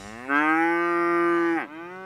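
Holstein dairy cow mooing once: a single long call that rises in pitch at the start, holds steady, then drops away at the end.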